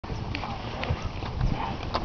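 Horse hooves clip-clopping on a paved road, a sharp clop about every half second, over a low background rumble.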